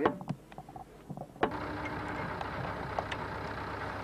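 A few light metallic clicks of hand tools on machinery. About a second and a half in, a steady, even mechanical hum starts and runs on.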